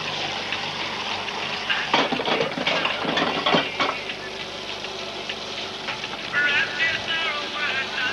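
Food sizzling in a frying pan, with a few knocks of the pan and utensils about two and three and a half seconds in.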